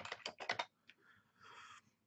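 Typing on a computer keyboard: a quick run of faint keystrokes in the first half-second or so, then a single faint click.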